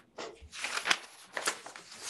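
Papers being handled and shuffled close to a microphone: a series of short rustles.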